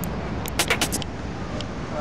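City street traffic noise: a steady wash of cars driving past, with a quick run of sharp clicks about half a second in.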